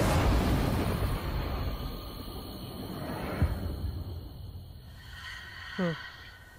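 Movie-trailer sound design at the title card: a deep rumble that starts loud and slowly fades, with a single low thump about three and a half seconds in. Near the end a woman murmurs "hmm".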